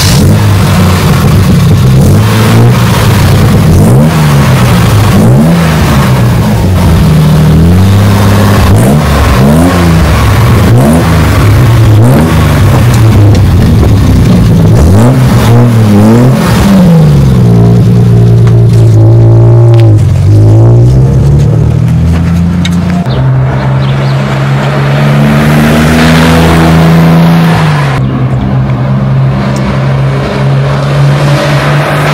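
A 1976 Triumph TR6's straight-six engine through a free-flow dual exhaust, loud. It is blipped over and over for about the first half, each rev rising and falling within a second or two. Then it is held up briefly and settles to a steadier speed with slight rises for the rest.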